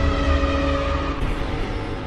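Logo intro sound effect: a deep low rumble with a few held tones, fading out gradually.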